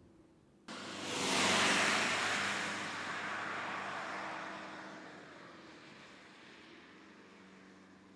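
Fiat Tipo sedan driving past on a track: a whoosh of tyres and engine that starts abruptly about a second in, peaks, then fades away over a few seconds.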